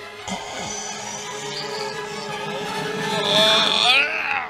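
Background film score of steady held tones, growing louder toward the end, with a short rising cry-like sound near the end.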